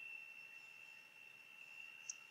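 Near silence: faint hiss with a thin, steady high-pitched whine in the background.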